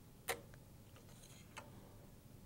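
Small handling clicks from a desk tape dispenser and a strip of clear tape: one sharp click a quarter second in, a few fainter ticks and a soft brief rustle, then another click near the end.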